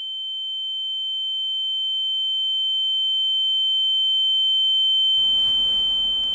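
A steady, high-pitched electronic tone, a single pure whistle-like note with a fainter lower note beneath it, slowly swelling in loudness. It is used as an eerie sound effect that the characters hear. The lower note drops out about five seconds in, leaving the high tone over faint room noise.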